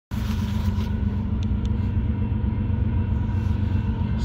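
Steady low engine rumble, with a faint steady whine above it.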